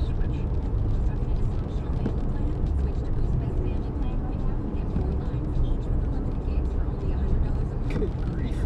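Steady road and engine noise of a car driving at speed, heard from inside the cabin.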